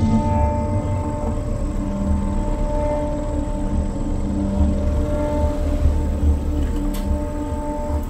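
Background music: long held tones over a low, uneven pulse.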